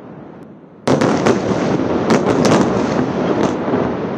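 Airstrike explosion: a sudden heavy blast about a second in, followed by several sharp cracks and a long rolling rumble that slowly dies away.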